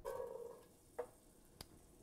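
Chopped onions tipped from a small glass bowl into a stainless-steel pot, with two light clicks of the bowl against the pot about a second in and again just after.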